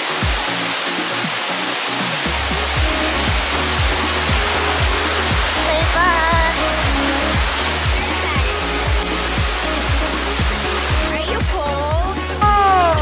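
Waterfall rushing steadily, heard under background house music with a regular kick-drum beat, its bass line coming in about two seconds in.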